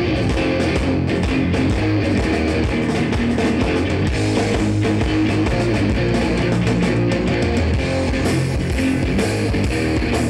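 Live thrash metal band playing at full volume: distorted electric guitars driven hard over drums with busy cymbals, loud and steady.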